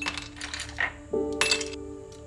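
Ice cubes dropped into an empty drinking glass, clinking against the glass several times, the loudest clink about one and a half seconds in. Background music plays steady notes underneath.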